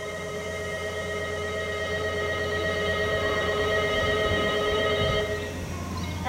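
Station departure bell: a steady electronic ringing of several held tones that cuts off suddenly about five seconds in, over a low steady hum.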